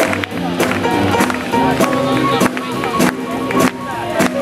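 Live big band playing a boogie-woogie swing number, with grand piano and upright double bass over a steady drum beat.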